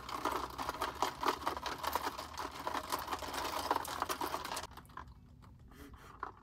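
A straw stirring ice in a plastic cup of iced coffee: rapid rattling and clicking that stops suddenly near the end.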